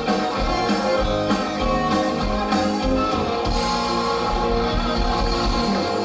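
Live rock band playing: electric guitars, bass guitar and drum kit, loud and steady with regular drum hits.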